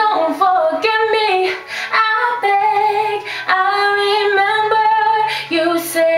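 A woman singing a slow ballad solo, in long held notes with short breaths between phrases and only faint accompaniment beneath.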